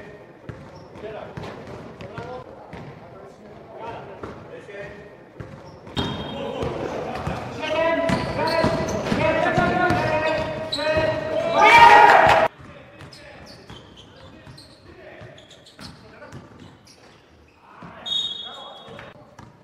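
Basketball being bounced on a gym floor with players calling out, echoing in a sports hall. About six seconds in, loud shouting and cheering from players breaks out over a last-second game-winning shot, growing to its loudest before cutting off suddenly about halfway through.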